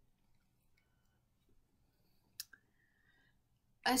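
Near silence broken by a sharp click about two and a half seconds in, followed at once by a fainter one, as hands turn a plastic fashion doll.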